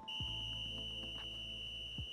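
A volleyball referee's whistle blown in one long, steady, high blast of about two seconds, stopping play for a substitution, over quiet background music.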